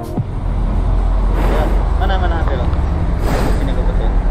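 A steady low engine rumble from a motor vehicle running, with faint voices in the background.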